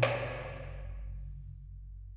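Background music: a deep percussion stroke at the very start, ringing away over a sustained low note.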